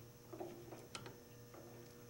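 Drill press running faintly with a steady low hum, with a couple of light clicks.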